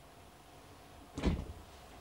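Faint room tone with one brief, soft, low thump a little over a second in.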